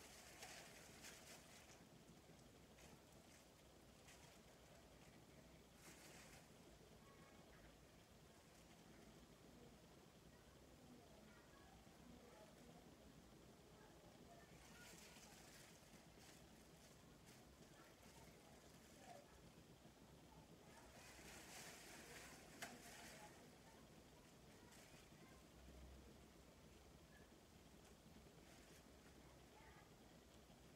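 Near silence: room tone, with a few faint, brief hisses.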